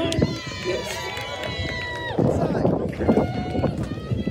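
Spectators shouting at a wrestling bout: long, held, high-pitched yells over the first two seconds, then a busier mix of shouts and crowd voices.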